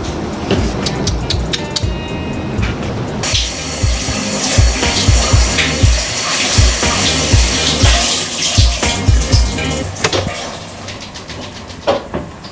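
Background music with a steady bass beat, under the even hiss of a running shower that starts about three seconds in and fades out near the end.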